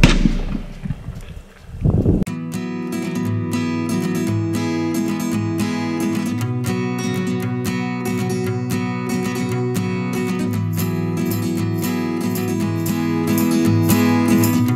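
A rifle shot's loud report dying away, with a second loud burst about two seconds in. After that, background music with strummed acoustic guitar plays steadily.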